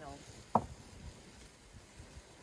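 Open wood fire burning under an iron cooking pot, with one sharp crack about half a second in over a low rumble.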